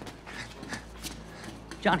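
Footsteps on a concrete garage floor, about four steps at a walking pace.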